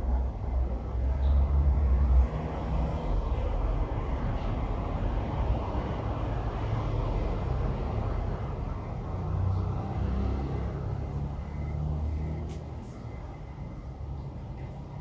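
Continuous low outdoor rumble, loudest for the first two seconds and easing slightly near the end, with a brief sharp tick about twelve seconds in.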